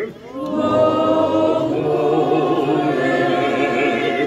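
A group of voices singing together without instruments, with a short dip just after the start and then one long held phrase with wavering vibrato.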